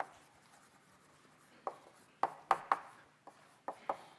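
Chalk writing on a blackboard: a run of short, sharp taps and scrapes as letters are stroked out, beginning about a second and a half in.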